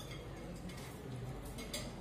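Faint handling noise of a recurve limb's fitting being pushed into the limb pocket of a Gillo GT riser, with one light click near the end.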